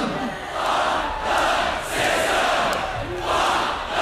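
Large concert crowd chanting in unison, its shouts coming in regular swells a little over a second apart.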